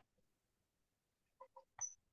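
Near silence, then three short faint sounds about a second and a half in, the last one with a high-pitched edge.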